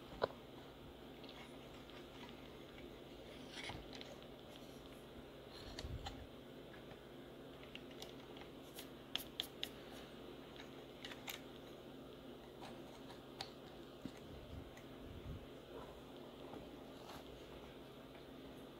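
Quiet handling of a guided knife sharpener's stone holder: a few faint, scattered clicks and a soft knock about six seconds in as the stone is turned over to its other grit side.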